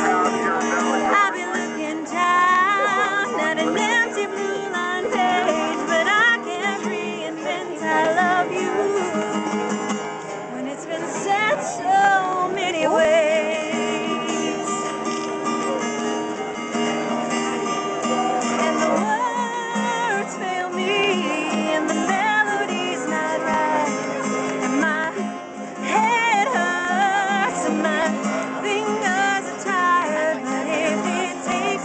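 A woman singing while strumming a steel-string acoustic guitar.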